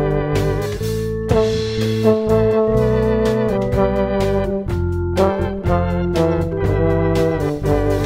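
Instrumental Motown-style cover played by a small band: a tuba carrying the melody with vibrato over organ chords, electric bass and a drum kit keeping a steady beat.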